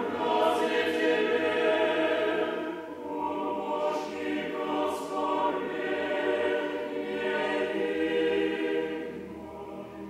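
Mixed choir singing Russian Orthodox liturgical chant a cappella, in sustained chords. One phrase ends about three seconds in, and the singing softens near the end.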